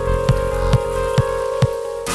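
Psychedelic trance music: a steady kick drum about twice a second, four beats, under a held synth tone. Right at the end it gives way to a dense, hissing wash.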